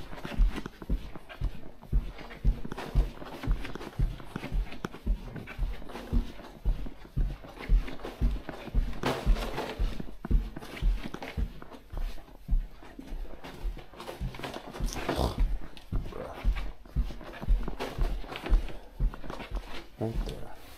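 Footsteps walking steadily along a carpeted hallway, heard as muffled low thumps about two a second through a body-worn camera. Two louder, short noisy sounds come in about nine and fifteen seconds in.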